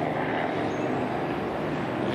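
Steady outdoor city ambience heard from high above: an even rush of distant traffic with a faint low hum.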